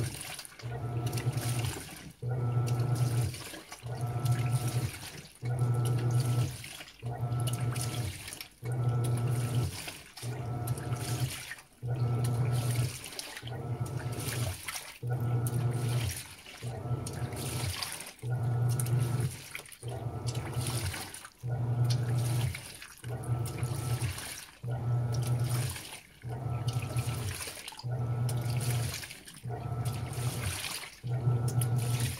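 Panasonic 16 kg top-load washing machine agitating a load of sheets: the pulsator motor hums in even strokes about every one and a half seconds, with a short pause between each, while the water and laundry swish around in the tub.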